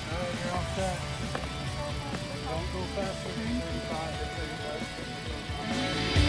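Background music with a person's voice talking over it, with no words clear enough to make out. The music swells louder right at the end.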